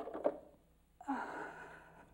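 A few short knocks as a plastic bucket is lifted by its wire handle, then about a second in a woman sighs audibly with effort.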